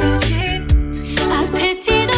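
A cappella ensemble singing a pop/soul song in close harmony over a sung bass line, with beatboxed vocal percussion keeping the beat. The voices cut out briefly near the end.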